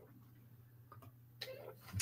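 Quiet room with a few faint clicks and a brief soft sound near the end.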